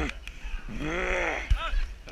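A drawn-out shout that rises and falls in pitch, then a sharp knock about three quarters of the way in and a shorter, higher cry.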